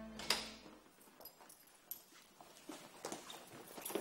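A wooden front door shuts with a sharp knock, followed by faint, irregular footsteps on a hard floor.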